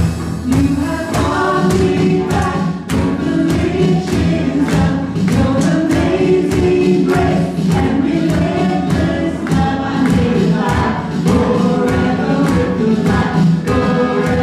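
Live worship band: several voices singing together over acoustic guitar and keyboard, with a steady beat.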